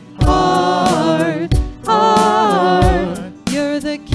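Contemporary worship song: several voices singing long, wavering held notes over a steady drum beat.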